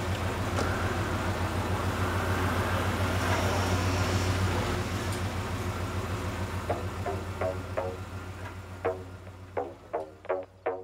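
A van engine idling as a steady low rumble that fades away over the second half. Short, separate musical notes come in from about seven seconds.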